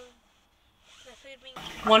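Speech only: a voice trails off, then a brief near-silent pause, then speaking resumes with 'one cup ketchup'.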